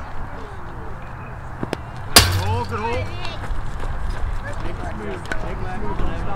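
One sharp crack about two seconds in, over background voices.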